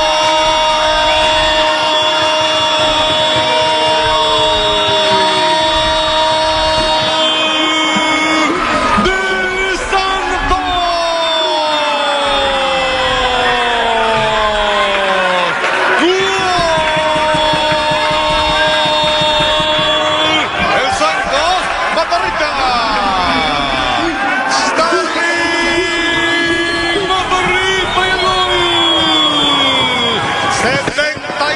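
A football commentator's long, drawn-out goal shout for a free kick that has just gone in: several held notes, each lasting seconds and sliding down at its end, repeated over the background noise.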